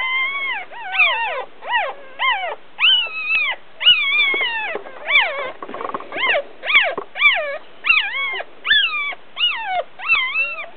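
Papillon puppies crying: a steady run of short, high-pitched cries, about two a second, each rising and then falling in pitch.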